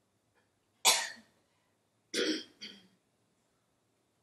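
A person clears their throat with a cough: one sharp burst about a second in, then two shorter ones a second later.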